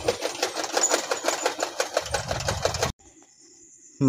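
A small machine running with rapid, even clicking, about ten clicks a second. It cuts off abruptly about three seconds in, leaving a faint high steady trill.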